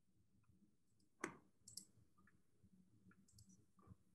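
Near silence broken by a few short, faint clicks; the loudest is about a second and a quarter in, and smaller ones follow near the middle and just before the end.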